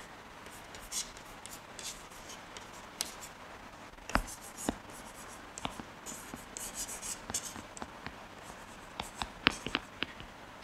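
Chalk writing on a chalkboard: scattered taps as the chalk meets the board, mixed with short scratching strokes, with a sharper knock about four seconds in.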